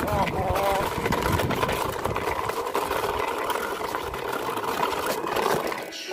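A steady, rough, engine-like drone that simulates a truck engine for a radio-controlled toy truck as it drives. It fades out near the end, after a brief vocal sound at the start.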